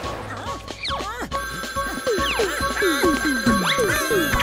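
Cartoon alarm clock ringing with a bell-like tone that holds steady from about a second and a half in, over lively background music full of quick falling glides.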